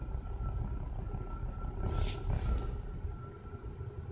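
Low, steady rumble of a car cabin, with a faint steady high whine and a short hiss about two seconds in.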